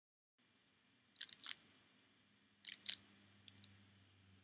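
Near silence, broken by a few faint, short clicks in small clusters: two or three at a time, three times.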